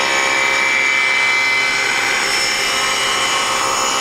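SawStop table saw running with its blade ripping a board lengthwise along the fence: a steady machine whir with the sawing of the wood.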